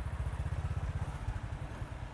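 Motorcycle engine idling, a steady rapid low throb.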